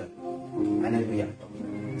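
A man's voice singing a drawn-out, melodic phrase into a microphone, its pitch held and wavering for about a second.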